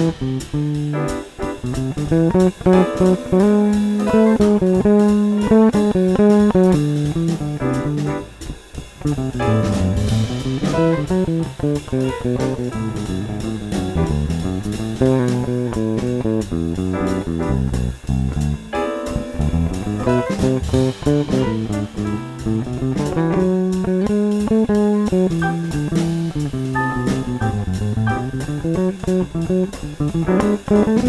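Electric bass guitar played melodically, improvising with the C Lydian augmented scale (C D E F# G# A B) over a major-seventh chord sound: a continuous line of plucked notes in repeated runs up and down the scale, bringing out its raised fourth and fifth as tension.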